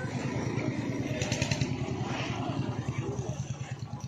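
An engine running steadily nearby, a low even pulsing, with faint voices in the background.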